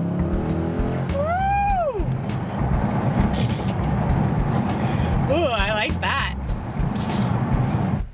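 Dodge Challenger's Hemi V8 running as the car is driven, a steady low drone heard from inside the cabin. A high voice rises and falls about a second in, and brief voice sounds follow around five to six seconds in.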